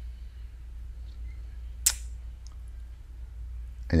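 A single sharp computer mouse click about two seconds in, then a fainter tick, over a steady low hum.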